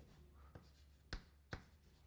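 Writing strokes while working out an equation: three short, sharp taps of the writing tool, roughly half a second apart, over a faint steady low hum.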